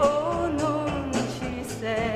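A woman singing a pop ballad over band accompaniment with a steady beat. She holds a note with vibrato near the end.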